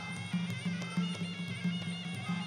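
Traditional Khmer fight music for Kun Khmer boxing: a reedy wind melody of held notes, typical of the sralai, over a steady repeating low drum beat.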